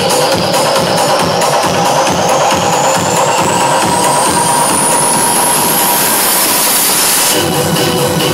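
Trance dance music played loud over a nightclub sound system. The kick drum drops out for a build-up while a rising noise sweep climbs steadily in pitch for about seven seconds, and the beat comes back in near the end.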